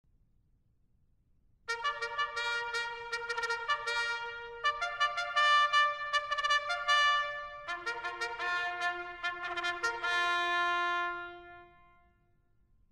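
Trumpet fanfare: quick repeated notes in several phrases starting a couple of seconds in, closing on a long held low note that fades away near the end.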